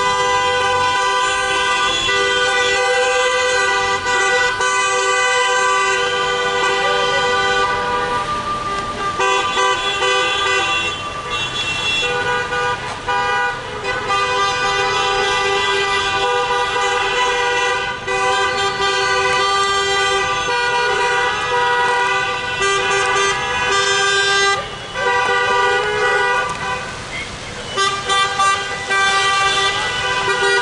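Car horns of a passing convoy honking together almost without a break, several steady held notes sounding at once, easing off briefly a few times.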